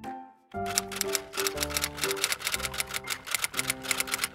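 Rapid typewriter key clicks start about half a second in and run on, over a light tune of plucked-sounding notes.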